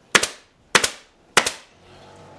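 Pneumatic staple gun firing three times at an even pace, about two shots a second, each a sharp clack driving a staple through upholstery webbing into the wooden seat frame.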